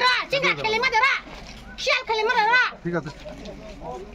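Excited, high-pitched shouting from several people talking over one another, with a short lull about a second in.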